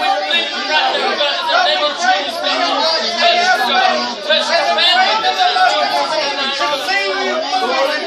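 A group of people praying aloud at the same time, many voices overlapping into a continuous babble with no single voice standing out.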